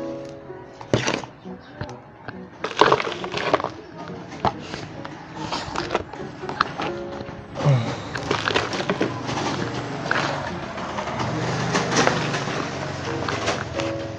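Potting soil being scooped with a small hand trowel and dropped into a plastic pot: an irregular run of rustling scrapes and light knocks, over faint background music.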